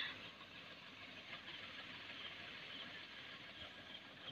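Faint, steady outdoor background noise with no distinct event.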